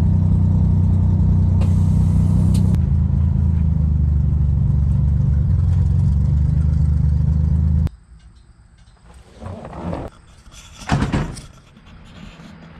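Chevrolet Corvair's air-cooled flat-six running steadily, heard from inside the car, with a brief hiss about two seconds in. Near eight seconds the engine sound cuts off, leaving a quieter outdoor background with a couple of short rustling knocks.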